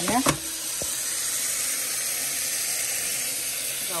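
Tap water running steadily onto a pile of leafy greens in a stainless steel sink. A single short knock comes just after the start.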